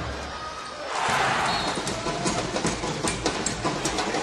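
Basketball game sound: a steady arena crowd hum with the sharp knocks of the ball bouncing on the hardwood court. The crowd dips about a second in and then rises again.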